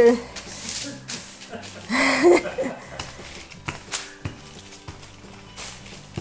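Parchment paper rustling and crinkling as dough is rolled out between two sheets with a wooden rolling pin, over steady background music. A brief vocal sound comes about two seconds in.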